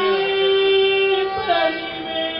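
Namasankeertanam devotional singing with harmonium accompaniment. A voice holds one long note for about a second, then moves to a new note, over the harmonium's steady chord.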